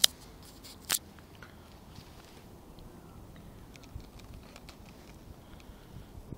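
Two sharp clicks about a second apart, then a few faint small ticks over a low hiss: hands handling a Canon DSLR and the phone filming it.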